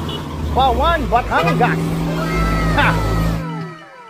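Background music and people's voices over a low rumble of road noise. Everything drops out suddenly about three and a half seconds in, and guitar music starts at the end.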